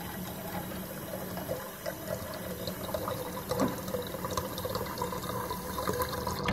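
Kitchen faucet running a steady stream of tap water into a small glass, filling it.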